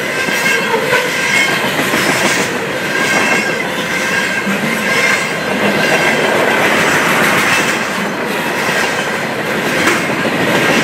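Freight train cars passing at close range at speed: a steady, loud clatter of steel wheels over the rails, with faint high squealing from the wheels.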